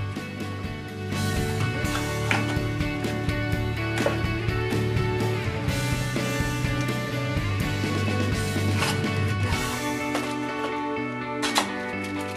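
Background music with steady sustained chords.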